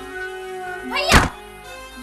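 Sustained background score tones with a single loud thunk about a second in.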